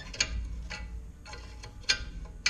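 A few sharp metallic clicks, spaced unevenly about half a second or more apart, from a T-handle wrench turning a small nut on a battery hold-down rod. The nut turns freely: heating it red and quenching it with water has broken the rust.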